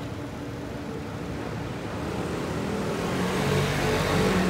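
Street traffic hum with a motor vehicle's engine getting louder over the last couple of seconds as it approaches.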